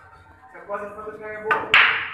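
Pool cue striking the cue ball and balls colliding: two sharp clacks close together about one and a half seconds in, the second the louder.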